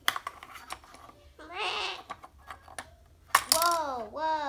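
Plastic toy figures clicking and clattering against each other and the tabletop as they are handled, with a child's wordless, sing-song vocal sounds twice, the louder one near the end.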